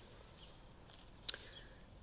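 Faint outdoor background with one short, sharp click a little past halfway through.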